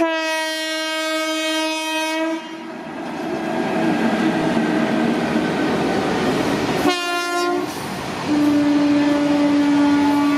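Twin WAG-5 electric locomotives hauling a freight train sound their horn as they pass: a blast of about two and a half seconds, then the running noise of wheels on rail, a short toot about seven seconds in, and a long steady horn from near the end.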